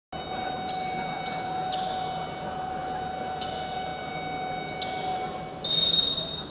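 Steady ambient noise of an indoor basketball hall, with a faint steady hum and a few faint high clicks. Near the end comes a short, louder, shrill high tone.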